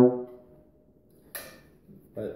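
The end of a held note on a Carl Fischer ballad horn, a brass horn of the flugelhorn family, cutting off just after the start and dying away briefly. About a second and a half in comes a single short click as the horn is handled.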